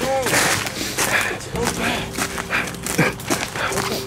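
Hurried footsteps on rough ground, a step about every half second.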